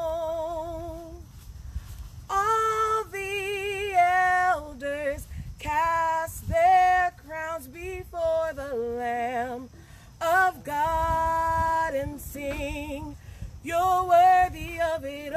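A solo woman's voice singing a slow worship song, unaccompanied, holding long notes with vibrato in phrases broken by short pauses for breath.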